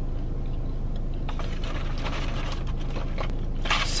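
Steady low hum of a car idling, heard from inside the cabin, with faint scattered clicks in the middle. A word begins right at the end.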